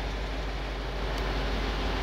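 Steady low background rumble with a faint hiss, unchanging and with no distinct event.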